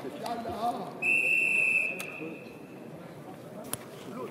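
Referee's whistle, one loud blast about a second long, stopping the wrestling bout, over voices in the hall.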